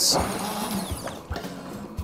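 Immersion blender being knocked against and handled at a soup pot to shake off soup: a sharp clink at the start, then a few light knocks.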